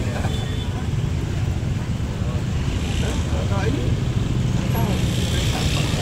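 Heavy, steady bass rumble from a large subwoofer-stacked sound-horeg system (Tanpa Batas Audio, 12 subs) running during a sound check, with voices talking over it.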